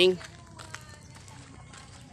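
A man's voice finishes a spoken greeting at the very start, then only faint outdoor background remains, with a few light clicks.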